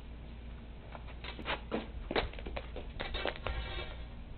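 A lit firecracker fuse sputtering: a string of sharp crackles and pops that grows denser near the end, then stops.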